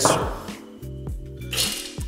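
Background music with held, steady notes.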